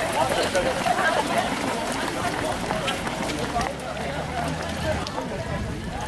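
Footsteps of a large group of runners in running shoes on a paved path as the pack passes, with voices and a laugh near the start. A low steady hum comes in briefly around the middle.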